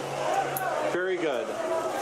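People talking close by, over a background of crowd chatter.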